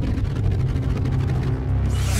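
A low, steady rumbling drone from a TV episode's soundtrack.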